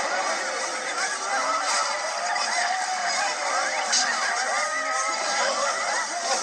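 A jumble of several video soundtracks playing at once through laptop speakers: many overlapping cries and calls gliding up and down in pitch, thin and tinny with little bass.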